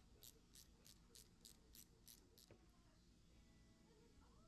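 Faint clicking of a hand socket ratchet tightening a bracket bolt, about three clicks a second, stopping about two and a half seconds in with a small knock.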